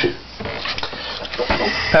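Indistinct, muffled voices with some background noise.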